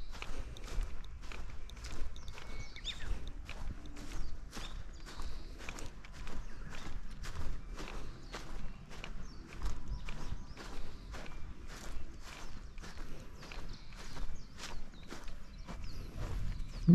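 Footsteps of a person walking over dry grass and earth, a steady series of evenly paced steps.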